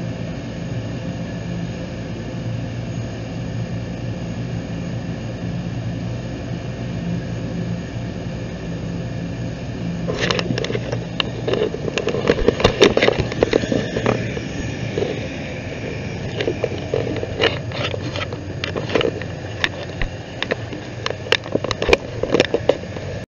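Steady hum and whine of an aircraft turbine engine running. From about ten seconds in, irregular knocks and rubbing from the phone being handled right at the microphone.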